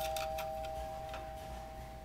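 Electric doorbell chime's tone bars ringing on after the solenoid plunger has struck them: two steady tones fading slowly away.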